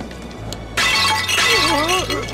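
Background music with sustained low notes, cut through about three-quarters of a second in by a sudden loud crash like something breaking, lasting just over a second, followed by a wavering, gliding pitched sound near the end.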